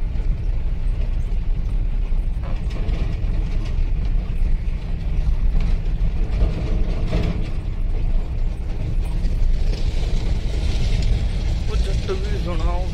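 Inside the cab of a Mahindra Bolero pickup driving slowly over a rough gravel road: a steady low rumble of engine and tyres, with rattling and occasional knocks from the cab as it jolts over the uneven surface.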